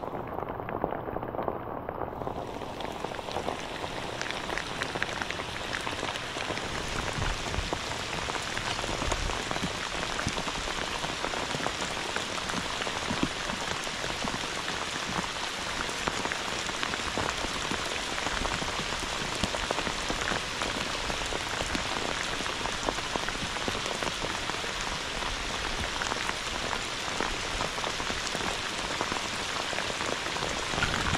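Heavy rain falling steadily on the lake surface, a dense, even hiss that sounds duller for the first couple of seconds.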